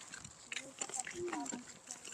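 Faint voices with a few soft footsteps on a dirt path.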